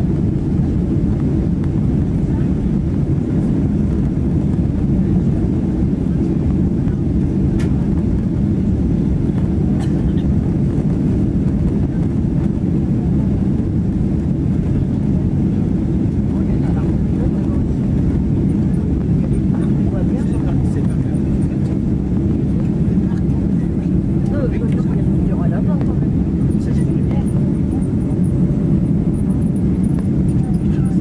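Steady low cabin roar of a Boeing 767-300ER airliner descending on approach with its flaps extended.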